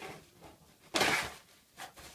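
An empty plastic dog-food bag crinkling and rustling as a Dalmatian noses and tugs at it, with one loud rustle about a second in.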